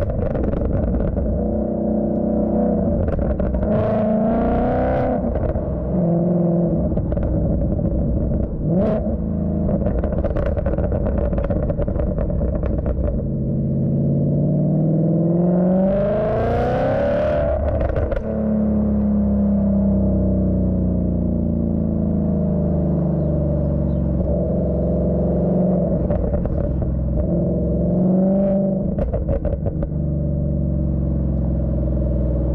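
Exhaust of a supercharged V8 Ford Mustang (Clive Sutton CS800, 800 bhp), heard at the quad tailpipes while driving: a deep running note with several swells of throttle. About halfway through comes a hard pull that rises in pitch for a few seconds, then drops suddenly at a gear change, and a few sharp cracks are heard along the way.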